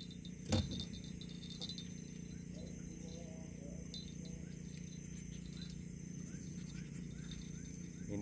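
Quiet riverbank ambience at dusk: a steady high insect drone over a low hum, with one sharp knock about half a second in and a few faint light metallic tinkles.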